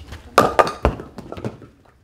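A skittles ball striking wooden pins: a sharp hit, then the pins clattering and knocking against each other with one heavy thud among them, dying away after about a second.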